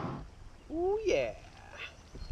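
A short vocal sound, under a second long, about two-thirds of a second in: its pitch rises and then falls.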